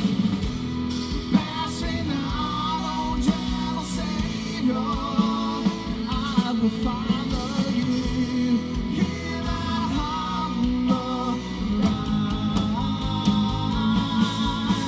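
Live rock band playing a song: electric guitars, bass and drums with a sung melody line.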